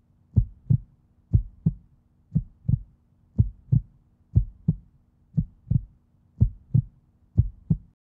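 Heartbeat sound effect: paired low thumps, lub-dub, about once a second, over a faint steady low hum.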